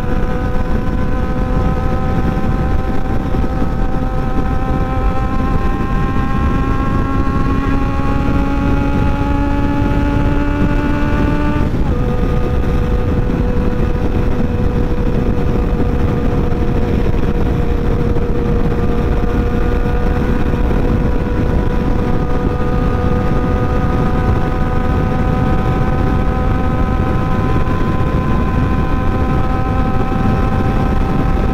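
Sport motorcycle engine pulling at highway speed, its pitch climbing slowly, then dropping suddenly about twelve seconds in as it shifts up a gear, and climbing slowly again. Heavy wind rush on the microphone throughout.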